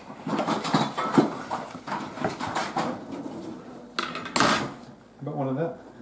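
Quiet talk over the clatter of a serving utensil and plates while pie is cut and served. A brief, sharp clatter about four and a half seconds in is the loudest sound.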